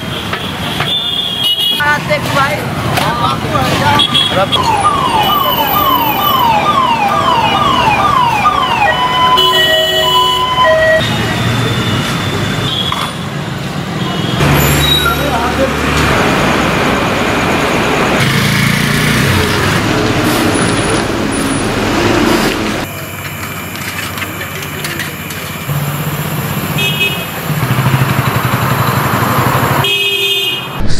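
Street traffic noise: motor vehicles running and passing, with scattered short horn tones and people's voices. For several seconds a rapidly repeating rising electronic tone sounds, about eight rises in five seconds. Around two-thirds of the way through, the noise drops to a quieter street.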